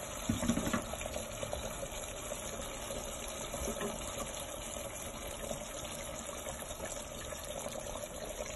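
Sauce simmering in a pot of dried apricots and prunes on a gas stove: a faint, steady bubbling hiss, with a few small clicks about half a second in.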